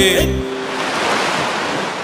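A song with singing cuts off just after the start. It gives way to a steady rushing noise with no tone in it, which slowly fades.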